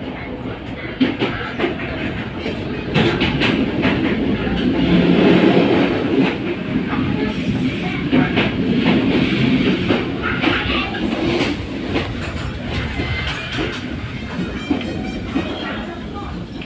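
Running noise of a train carriage heard from inside, a steady rumble with irregular clicks and knocks from the wheels and rail joints, growing louder for a few seconds around the middle.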